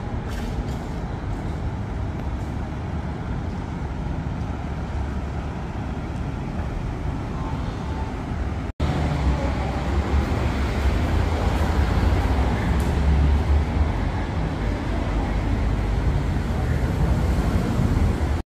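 Steady city road-traffic noise: a bus and cars running at an intersection, a continuous low rumble of engines and tyres. The sound drops out briefly about halfway, then a similar, somewhat louder low rumble continues.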